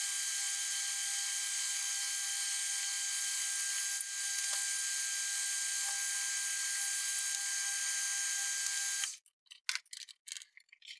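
Metal lathe running with a steady whir and a constant whine. About nine seconds in it cuts off abruptly, and a few light clicks and rattles follow.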